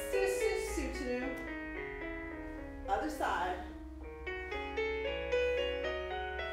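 Solo piano music for a ballet barre exercise, with notes played at a steady pace. A voice is heard briefly near the start and again about three seconds in.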